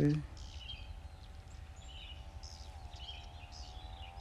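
Outdoor ambience: birds chirping briefly now and then over a steady low rumble of wind on the microphone. A faint steady hum runs underneath and drops slightly in pitch about three seconds in.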